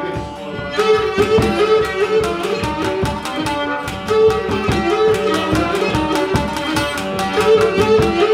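Cretan folk trio playing a syrtos: a bowed Cretan lyra carries the melody over laouto strumming and a steady hand-drum beat.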